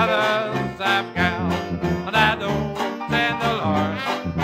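Traditional Dixieland jazz band playing, with banjo and tuba keeping a steady two-beat rhythm under trumpet, clarinet and trombone lines.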